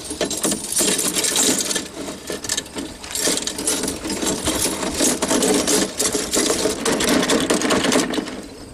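Steel foothold traps and their chains clinking and rattling against each other and the galvanized can as a bunch of them is lowered on a hook into the dye, a dense run of metal clicks with brief lulls.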